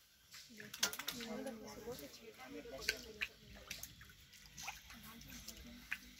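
Footsteps in shallow floodwater on a hard floor: a few scattered, irregular sharp splashes and clicks, under indistinct voices.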